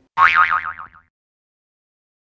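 A cartoon "boing" sound effect: a loud tone that warbles up and down about five times in under a second, then stops about a second in.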